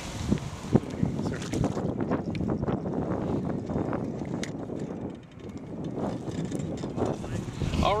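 Wind buffeting the microphone outdoors: a steady low rumbling rush with a few small clicks and handling knocks, and faint indistinct voices under it.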